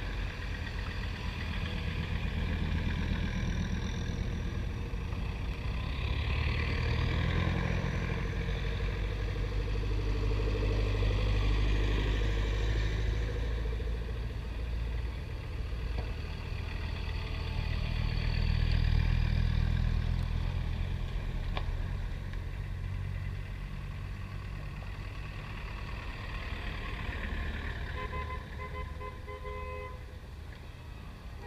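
Engines of a convoy of Land Rovers driving past one after another, the sound swelling as each vehicle nears and fading as it goes by.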